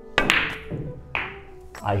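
A pool shot: a sharp clack as the cue tip strikes the cue ball, then a second clack about a second later as the cue ball hits the 8 ball.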